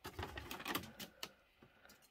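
Clear plastic seed-tray dome and plastic pots being handled, giving a few faint clicks and crackles in the first second or so, then quiet.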